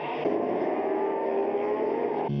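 Superbike racing motorcycle engines at high revs, their pitch rising steadily as they accelerate.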